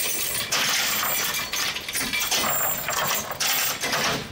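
Irregular metallic rattling and clinking, loud and continuous, from a river hand ferry's steel cable and fittings straining in flood current.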